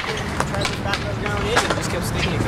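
Skatepark ambience: skateboard wheels rolling on concrete with a steady low rumble, scattered clicks and knocks, and faint voices talking in the background.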